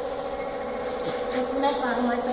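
A steady mechanical hum, with a person's voice briefly near the end.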